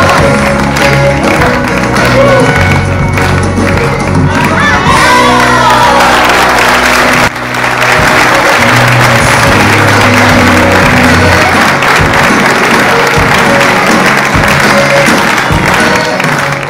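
Loud music with a steady bass line and held melody notes, which briefly drops about seven seconds in and comes back fuller and denser.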